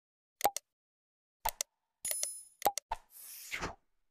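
Subscribe-button animation sound effects: two pairs of mouse clicks about a second apart, a short bell ding about two seconds in, two more clicks, then a falling whoosh near the end.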